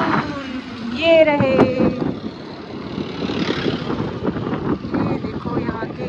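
Motorcycle engine running steadily while riding along a road, with a brief voice about a second in.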